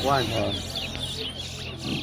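Caged towa-towa (large-billed seed finches) singing in quick, repeated rising and falling whistled phrases, with a short human voice just after the start.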